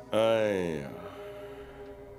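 A man's voice: one drawn-out vocal sound, falling in pitch and lasting under a second, over soft background music of held notes.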